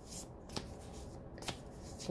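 A deck of tarot cards being shuffled by hand: a faint, soft shuffling with a few light card clicks.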